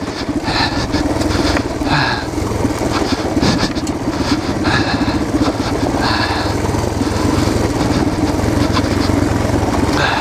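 Yamaha TTR230 trail bike's single-cylinder four-stroke engine running at low, steady revs down a steep rocky descent, heard from the rider's helmet camera. Short bursts of hiss come and go over the engine a few times.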